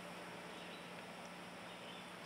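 Quiet, steady room tone: a faint low hum and hiss, with no splashing or trickling heard from the acrylic waterfall reservoir, which runs dead silent.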